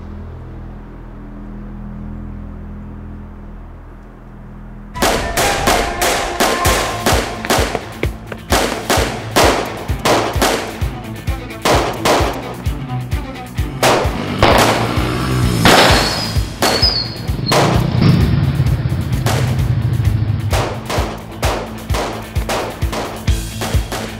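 A low, tense music drone, then about five seconds in a gunfight breaks out: rapid, irregular pistol shots in quick volleys over the music.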